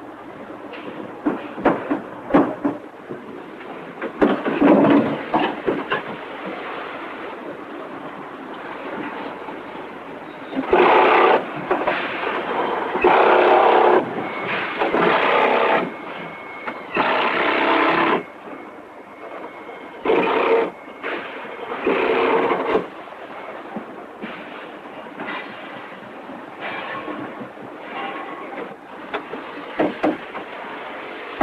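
Car assembly line noise: repeated metal clanks and knocks of body panels and machinery, broken by several loud bursts of machine noise lasting a second or two each, mostly in the middle of the stretch.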